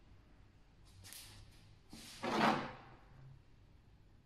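Metal timing chain pieces being moved on a workbench: a faint short scrape about a second in, then a louder half-second scrape just after two seconds.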